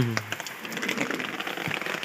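Rain falling: an even patter with scattered small drip ticks.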